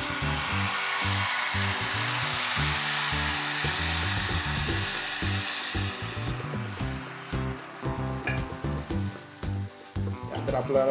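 Thin ragi (finger millet) batter sizzling as it is poured onto a hot cast-iron griddle: a loud, even hiss that dies down after about six seconds as the batter sets.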